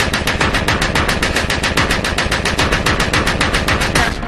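Dark electro track with a fast, evenly spaced run of percussive hits, about ten a second, over a steady bass: a drum roll in the electronic beat.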